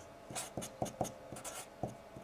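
Sharpie marker writing on a white sheet: a quick run of short, faint pen strokes as figures are written out.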